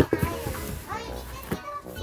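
Children's voices chattering, with music underneath. A sharp knock at the very start as the cardboard box of toy cars is handled, with a few lighter knocks after.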